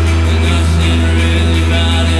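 Loud live post-punk band music, with a deep bass note held steadily underneath higher pitched parts.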